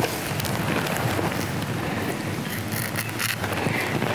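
Wind blowing on the microphone, a steady rumbling hiss, with a few faint brief rustles.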